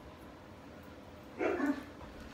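A dog barking briefly, one short bark or two in quick succession, about one and a half seconds in.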